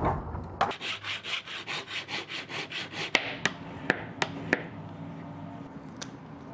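Hand file scraping along the edge of a metal etching plate in quick, even strokes, about five a second, bevelling the plate edge. The strokes are followed by a few sharp clicks of the file on the plate.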